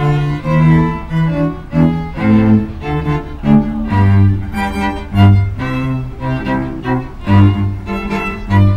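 A live string trio playing: cello and violins bowing a lively piece, the cello marking a steady pulse of short, separate low notes under the violins' melody.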